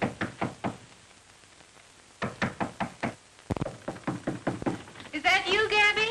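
Knocking on a door in three quick runs of raps with short pauses between, then a voice calling out near the end.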